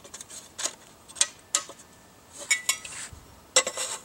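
Light metallic clinks and taps of steel hanger-strap cross pieces being fitted onto the rim of a tin can stove, one clink briefly ringing a little past halfway. A quick cluster of clinks near the end as a metal pot is set on top.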